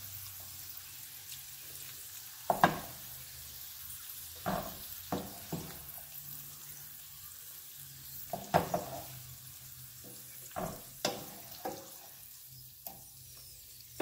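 Green beans sizzling in a hot frying pan, a steady faint fry hiss, broken by a string of sharp clacks as wooden tongs knock against the pan and the saucepan while the beans are lifted across.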